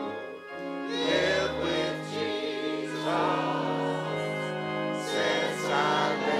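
Choir and congregation singing a gospel hymn over held organ chords, with sung phrases swelling in about a second in, near three seconds and again near five seconds.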